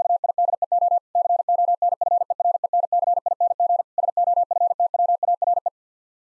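Morse code sent as a single steady beep tone at 50 words per minute, rapid dots and dashes spelling "VIDEO CONFERENCING SOFTWARE". Two slightly longer breaks, about a second in and about four seconds in, separate the three words. The code stops near the end.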